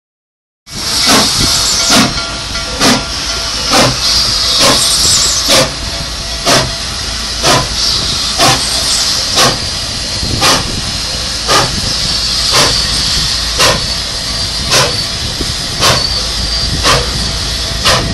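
Nickel Plate Road 765, a 2-8-4 Berkshire steam locomotive, moving slowly past: regular exhaust chuffs about once a second, spacing out a little as it goes, over a steady hiss of steam.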